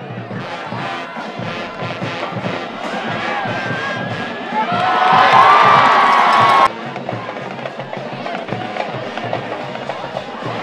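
Background music with a steady beat and bass line. Partway through, a louder burst of shouting voices rises over it for about two seconds, then cuts off suddenly.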